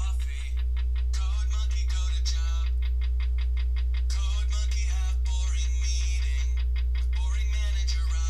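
A song with a singing voice playing from a Nokia 5310 XpressMusic phone's loudspeaker at full volume, over a steady low hum.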